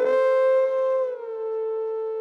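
Music: one long held wind-instrument note that bends up slightly at the start and slides down a little about a second in.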